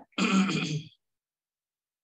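A man clearing his throat once, briefly, in the first second.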